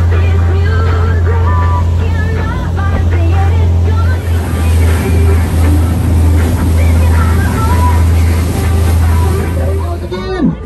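Tour boat underway at speed: a loud, steady low rumble from the boat and wind on the microphone, with water rushing and spraying in the wake along the hull. Voices and music are faint beneath it.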